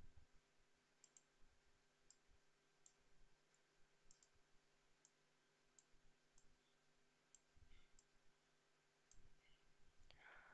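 Faint computer mouse clicks, a dozen or so spaced irregularly, against near silence.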